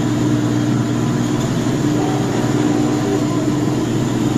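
An engine running steadily at one even speed, with a constant low hum.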